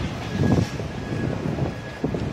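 Outdoor traffic background noise of vehicles around a taxi rank, with wind on the microphone and a faint steady high tone running through it.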